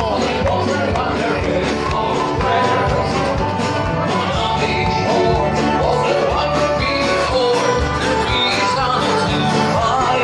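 Live sea shanty band playing and singing, with plucked guitar over a steady low beat.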